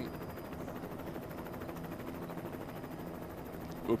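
Faint steady engine-like drone with a rapid fine flutter: background ambience of a televised road race between lines of commentary.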